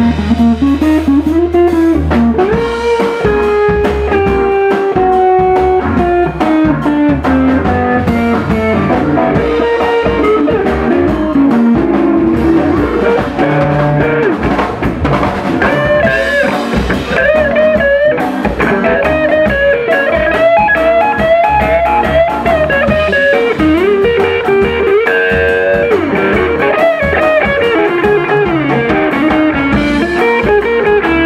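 Live blues band in an instrumental break: semi-hollow electric guitar playing running, gliding melodic lines over a drum kit.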